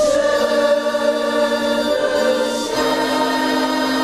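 Choir singing a hymn in long held notes, the chord changing at the start and again about two-thirds of the way through.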